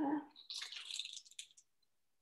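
Hand pepper mill grinding black pepper: a dry, rasping crackle lasting about a second.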